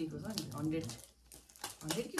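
Small plastic seasoning sachets crinkling and being torn open, a run of short sharp rustles and rips, under a person's voice in the first second.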